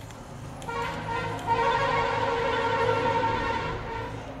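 A steady, sustained pitched tone with overtones starts a little under a second in, grows louder, holds, and fades away just before the end, over a low steady hum.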